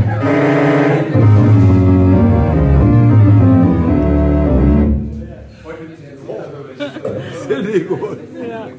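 A live jazz band playing: a drum kit with cymbals and an electric keyboard holding sustained chords over a low bass line. About five seconds in, the music drops to a much quieter passage with voices heard under it.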